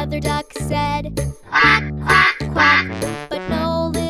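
Children's song music with three duck quacks in a row, about half a second apart, starting a second and a half in: the cartoon mother duck's "Quack! Quack! Quack!".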